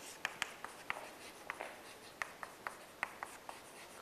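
Chalk writing on a chalkboard: a quiet, irregular run of short taps and brief scratching strokes as letters are written.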